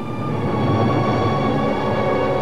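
A sustained chord of several held notes, swelling a little about half a second in: the closing music sting at the end of a TV horror-movie promo.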